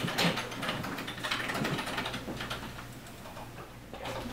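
Faint, scattered computer-keyboard typing clicks that thin out over the first couple of seconds, over a steady low room hum.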